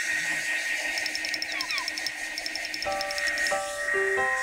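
Handheld hair dryer running steadily, with a constant high whine over its airflow noise. Light background music plays over it, with tinkling ticks and held chords coming in near the end.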